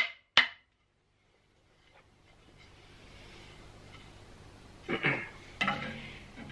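Two sharp wooden knocks at the start as cut boards are handled and set down, then faint shuffling, and a short vocal sound near the end.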